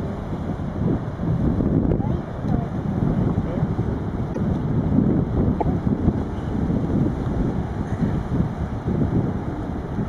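Strong wind buffeting the microphone: a low, gusty rumble that rises and falls in strength.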